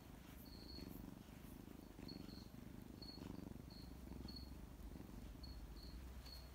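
Sphynx kitten purring softly, a low rumble that swells and fades with each breath. Faint short high chirps recur every second or so over it.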